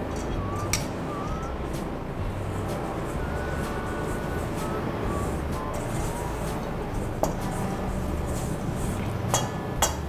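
A spoon stirring stiff dough in a stainless steel mixing bowl, scraping and knocking against the metal, with a few sharp clinks, two of them close together near the end. Soft background music plays throughout.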